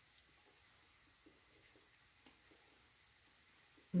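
Very quiet room with a few faint, soft chewing sounds from a mouthful of bircher muesli.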